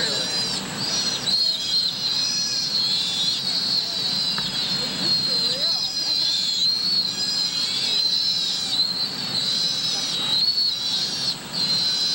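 Sea otter pup squealing: a long run of high-pitched calls, each rising and falling in pitch, with faint voices underneath.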